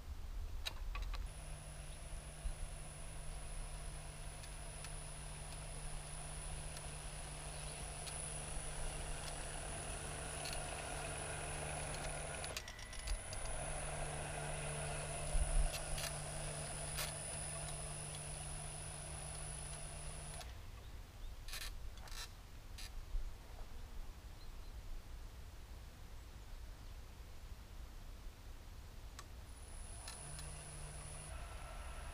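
Electric Krot motor-cultivator, driven through a frequency converter, running under load as it pulls a plough through soil: a steady high-pitched whine over a low hum. It drops out briefly about twelve seconds in, then cuts off about twenty seconds in, followed by a few sharp clicks, and starts again at the very end.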